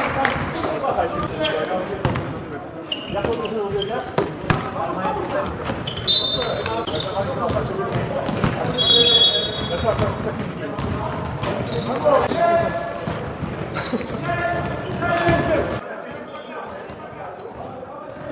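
Live sound of an indoor basketball game: the ball bouncing on the court, sharp knocks, short high sneaker squeaks and players' voices calling out. The sound drops noticeably quieter near the end.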